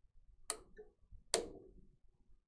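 Two sharp plastic clicks, the second louder, from the pinch-roller levers and pinch rollers of a Melco EMT16X embroidery machine being snapped down and pulled off.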